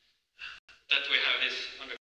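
A man giving a lecture: a short intake of breath about half a second in, then continuous speech.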